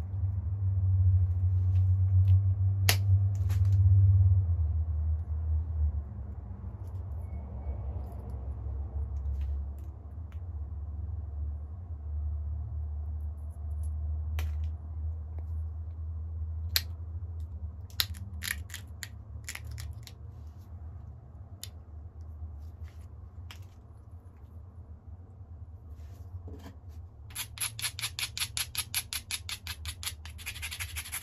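Flint being pressure flaked with an antler flaker: scattered sharp clicks as small flakes snap off the biface's edge, over a steady low hum. Near the end, quick repeated rubbing strokes of an abrading stone scraped along the flint edge.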